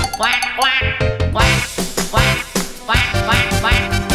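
Cartoon duck quacks, short calls with a wavering pitch repeated several times, over upbeat children's song music with a steady beat.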